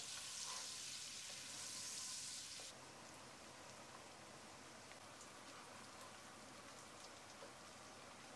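Diced white onions frying in hot oil in a pot: a faint, even sizzling hiss that drops lower about two and a half seconds in and stays faint.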